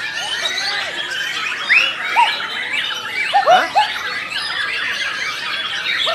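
Several caged white-rumped shamas singing over one another, a dense run of chirps, chatter and arched whistles. The loudest clear whistled notes come about two seconds in and again around three and a half seconds.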